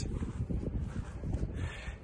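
Wind buffeting a phone microphone: an uneven low rumble.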